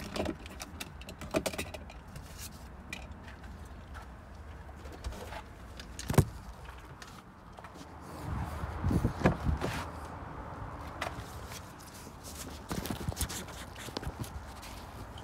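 Handling noise inside a car: scattered sharp knocks and clicks, then a louder stretch of rubbing and thumps about eight seconds in as the phone filming is picked up and moved.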